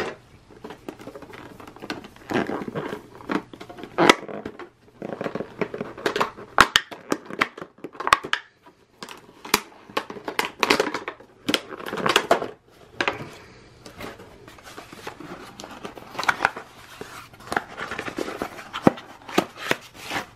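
Packaging being handled: a plastic tray in a product box and a small cardboard box give irregular rustling, scraping, clicks and knocks throughout.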